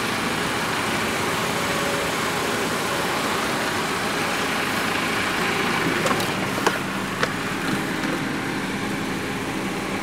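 Steady running noise of the GAZ 31105 Volga's engine at idle, heard from inside the cabin. A few light clicks come about six to seven seconds in.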